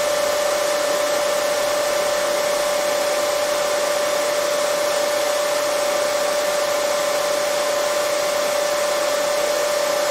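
Hair dryer running steadily: an even rush of air with a steady whine under it.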